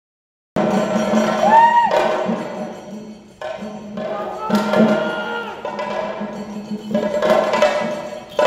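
Chenda drums beaten with sticks in fast, loud rolls that swell in surges, with a sustained ringing pitched tone over the drumming. The sound cuts in abruptly about half a second in.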